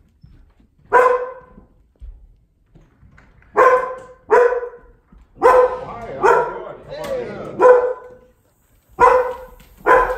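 A Standard Poodle barking at a visitor coming in the front door, about seven sharp barks spaced unevenly, a few of them close together in the middle. These are the barks of a dog that is fearful of visitors to the home.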